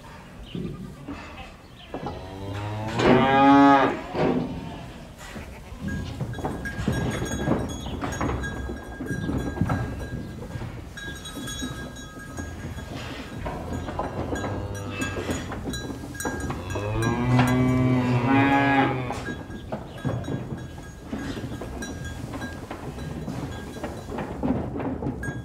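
Cattle mooing: two long, loud moos, one a few seconds in and one about two-thirds of the way through, over a steady farm background with light clicking and clatter.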